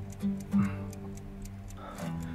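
Background music: a few plucked string notes over held low tones, with a light, regular ticking beat.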